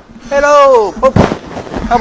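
A man speaking loudly in Thai in drawn-out exclamations that fall in pitch, with a single sharp thump a little past a second in.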